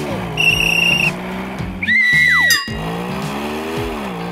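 Car sound effects over background music: a steady engine drone, a short high warbling squeal about half a second in, and a louder tire squeal about two seconds in that falls in pitch and cuts off.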